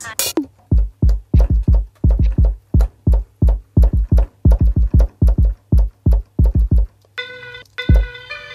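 Electronic drum hits, mostly a deep kick drum, played in quick uneven runs from a software drum instrument. About seven seconds in, a sampled melodic loop starts playing.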